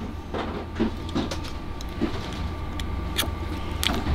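Faint, irregular small clicks and scrapes of a plastic depinning tool being worked into a sealed Delphi connector to press a terminal's locking tab and free the pin, over a steady low hum.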